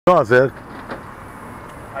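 A man's voice, close to the microphone, says a brief word, followed by a steady hiss of outdoor background noise.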